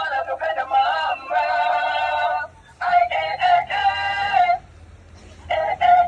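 Dancing cactus plush toy playing a song from its small speaker in a high-pitched, sped-up synthetic singing voice. It stops briefly about halfway through and again for about a second near the end.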